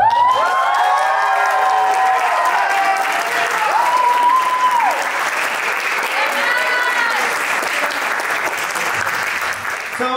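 Audience applauding and cheering as a performance ends, with shouted whoops over the clapping. One high 'woo' is held for about a second near the middle, and the applause eases a little toward the end.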